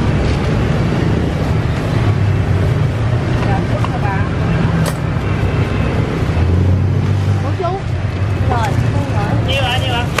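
Steady street traffic with engines running, and people's voices chattering in the last few seconds.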